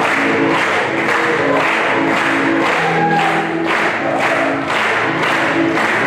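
A large group singing together and clapping in time, about two claps a second.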